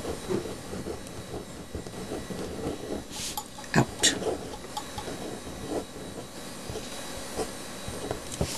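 Pen writing by hand on cardstock: a soft, irregular scratching of the tip across the paper, with a couple of sharper clicks about four seconds in.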